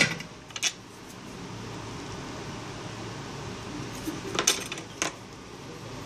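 Light metallic clicks and taps, about four (two near the start and two past the middle), over a steady low hum, as a soldering iron and fingers work the SIM-slot pads and metal frame of an opened LG Optimus 7 board while old solder is cleared off.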